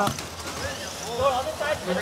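People talking over the steady background din of a crowded competition hall; no separate machine sound stands out.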